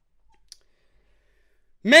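Near silence broken by one short click about half a second in, then a man's voice starting near the end.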